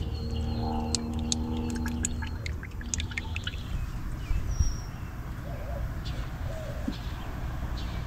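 Motor oil pouring from a plastic jug through a funnel into a car engine's oil filler, with a run of small ticks in the first few seconds. Birds chirp in the background.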